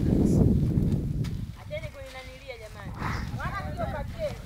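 Voices talking, preceded in about the first second by a loud low rumble of noise.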